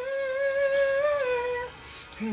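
A man humming a wordless sung note, held steady and then stepping down in pitch about halfway through before fading out near the end.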